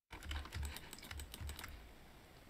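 Computer keyboard keys pressed in a quick, irregular run of clicks, with a few dull knocks underneath; the clicks thin out near the end.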